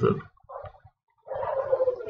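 A man's voice making wordless sounds: a brief murmur about half a second in, then after a short silence a drawn-out hesitation sound like 'uh' that leads back into narration.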